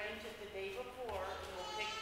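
A woman speaking, off-microphone, so her voice is fainter than the main speech around it.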